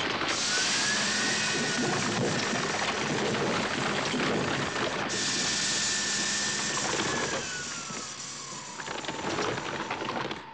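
Film sound effects of a scrapyard car crusher at work: metal crunching and grinding under a hydraulic whine from the press's jaws. The whine rises just after the start, holds, and falls away over a couple of seconds around the middle; the sound then grows quieter.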